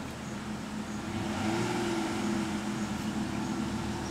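A motor vehicle's engine running steadily, growing louder about a second in, with a low hum and a slight rise in pitch.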